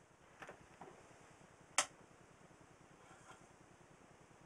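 Faint clicks and one sharper click about two seconds in, from switches and controls on the phantom loading test set being operated, over near silence.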